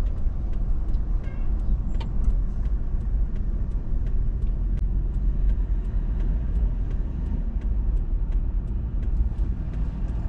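Inside a moving car: the steady low rumble of engine and road noise, with faint scattered clicks throughout.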